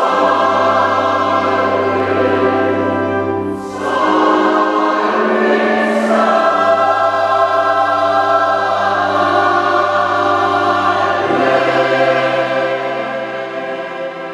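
Church choir singing a slow hymn in long held chords, with a brief dip in the sound about four seconds in.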